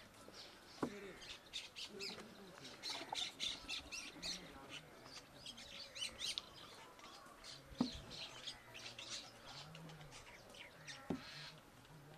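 Many small birds chirping and squawking in quick, overlapping calls. Three sharp knocks stand out above them: about a second in, near eight seconds and near eleven seconds.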